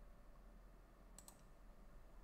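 Near-silent room tone broken by two quick clicks in close succession about a second in, most likely a computer mouse button being clicked.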